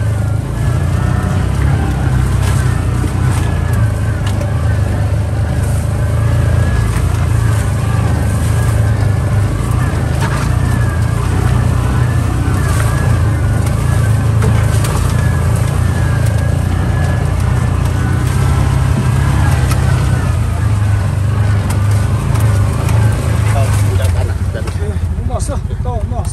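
Side-by-side UTV engine and drivetrain running steadily under way, a loud constant low drone with wind noise.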